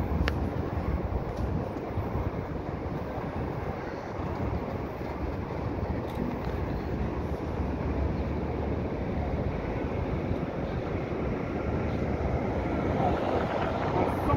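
Steady city street noise: a low rumble of traffic.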